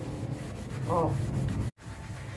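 Kitchen sponge scrubbing a pot lid coated in creamy scouring paste, a steady rubbing. The sound cuts out for a split second near the end.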